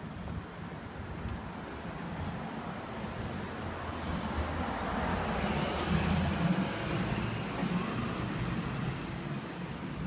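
Road traffic: a vehicle passing, its noise building to a peak about six seconds in and then fading, over a steady low hum.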